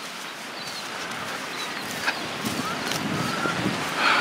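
Steady wash of ocean surf on the beach, slowly growing louder, with a few faint short bird calls.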